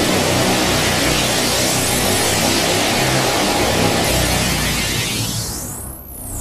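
Black MIDI playback: tens of thousands of synthesized piano notes from a Casio LK-300TV soundfont sounding at once across the whole keyboard, merging into a dense, loud wash of sound. Near the end the wash thins and drops in level as the middle notes fall away, leaving only the lowest and highest keys.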